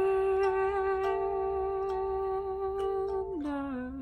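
A woman's voice holding one long steady note, with a few plucked kalimba notes ringing underneath; a little past three seconds in the voice slides down to a lower note and holds it.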